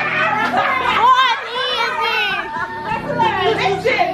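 Excited women's voices shouting and calling out over background music.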